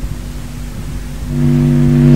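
A pause with only background hiss, then, a little over a second in, a loud steady drone of several unwavering tones starts abruptly and holds.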